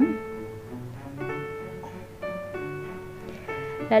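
Soft instrumental background music: held notes that change about once a second.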